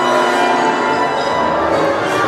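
Symphony orchestra playing a loud, dense passage of many overlapping held notes.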